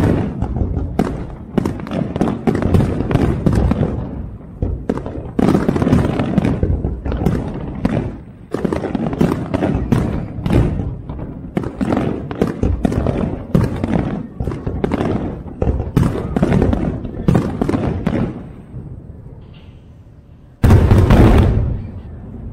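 Fireworks display: a rapid, irregular string of booming bursts, many overlapping and echoing, that thins out and grows quieter, followed by a loud new burst near the end.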